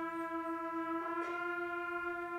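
School concert band holding one sustained note in unison, brass to the fore, freshly attacked and swelling brighter about a second in.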